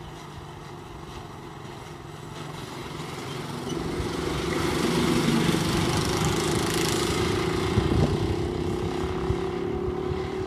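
Small go-kart engine running at speed, growing louder through the first half as it comes closer, then holding steady and loud.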